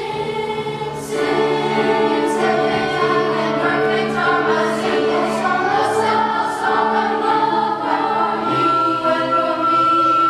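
Middle school choir singing together in children's voices, with a long held high note near the end.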